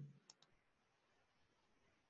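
Near silence with two faint clicks of a computer mouse about a third of a second in, as a menu item is selected.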